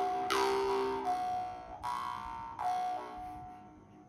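Two Vietnamese dan moi jaw harps played together, plucked with shifting overtones ringing over a steady drone. About a second in one harp stops, and the other plays on with a few more plucks, fading out near the end.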